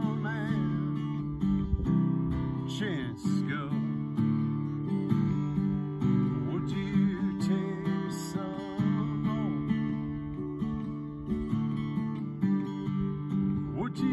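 Acoustic guitar strummed in a steady rhythm, playing an instrumental passage of a singer-songwriter's song with no sung words.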